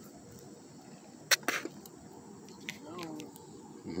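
Quiet pond-bank ambience with a steady high drone of insects, broken about a second and a half in by two sharp clicks close to the microphone.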